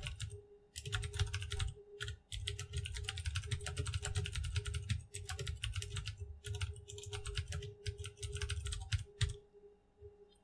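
Typing on a computer keyboard: runs of rapid keystrokes broken by short pauses, over a faint steady hum.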